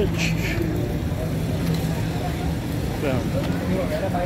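Street ambience: a steady low hum, vehicle-like, with other people's voices in the background.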